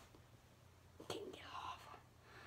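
Mostly near silence; about a second in, a faint click followed by a short, soft whisper.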